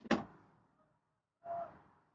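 A single sharp knock right at the start, dying away quickly, then a short breathy vocal sound about a second and a half later.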